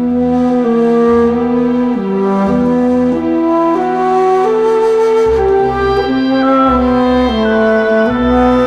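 Orchestral soundtrack music: a slow melody moving note by note over held chords, rising sharply in loudness right at the start. Low bass notes come in about five seconds in.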